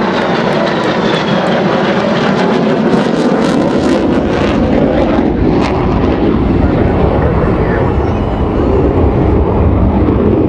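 Jet engine noise from a Navy F/A-18 Super Hornet flying overhead, loud and steady. A high whine falls in pitch over the first two seconds, and a deeper rumble builds in the second half.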